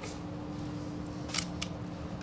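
Two light, sharp clicks close together about a second and a half in, from hands handling an Archon Type B polymer pistol, over a steady low room hum.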